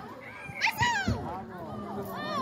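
High-pitched children's voices calling out during a football game, with short shouts about half a second to one second in.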